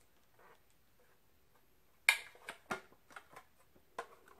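About two seconds of quiet, then a sharp click followed by a run of lighter clicks and knocks as the pieces of a stackable three-piece cosmetic organizer are handled.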